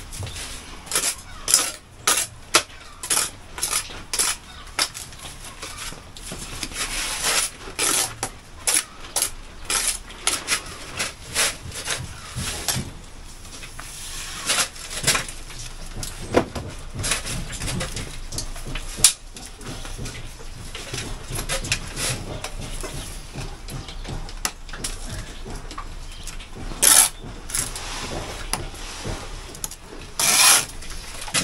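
Masonry work: a steel trowel clinking and scraping against concrete blocks and mortar as blocks are handled and laid. The work makes a run of sharp taps and scrapes, with a couple of louder knocks near the end.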